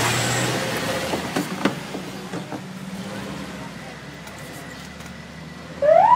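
Engines of an ambulance and a police pickup driving away, the sound fading as they go. Just before the end a siren starts up, its wail rising in pitch.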